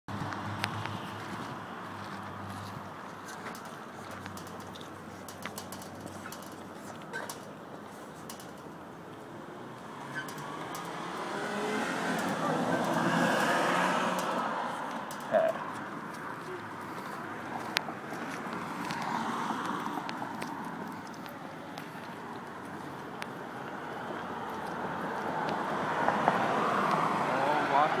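Road traffic: a steady hum of cars, with vehicles swelling past about three times, plus a few short sharp clicks.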